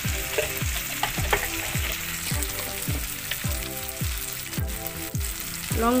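Tomato masala sizzling in oil in a kadai while a spatula stirs it, under background music with a deep beat about twice a second.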